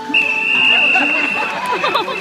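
A trainer's whistle blown in one long, steady, high blast lasting nearly two seconds, over audience chatter. In a sea lion show it is the signal that tells the sea lion it has performed correctly.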